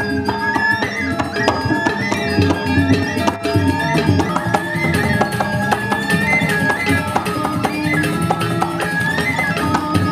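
Balinese gamelan playing dance accompaniment: a dense, rapid pattern of struck metal keys and drums, with a high melody line gliding and bending above it.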